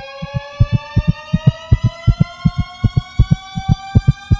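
Tension-building film score: a sustained synthesized tone rising slowly and steadily in pitch over fast, regular low pulsing thumps that quicken as it climbs.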